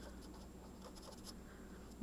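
Felt-tip pen writing on a paper worksheet: faint scratchy strokes as a word is written out, mostly in the first second and a half.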